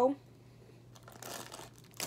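A brief crinkling rustle, about half a second long, a little past the middle, as of packaging being handled.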